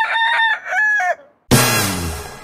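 A rooster crowing cock-a-doodle-doo, in two pitched phrases that rise at the start and drop off at the end. About a second and a half in, a loud sudden hit starts the music.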